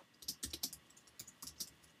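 Typing on a computer keyboard: a quick, irregular run of about ten light keystrokes.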